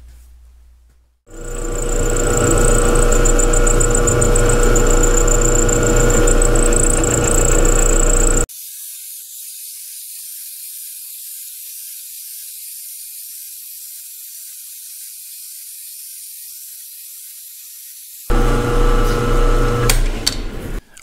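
Vertical milling machine running, its end mill cutting splines into the weld-built-up end of a steel shaft, with a steady whine. About eight seconds in the sound cuts off abruptly to a thin hiss for about ten seconds, and the milling comes back near the end.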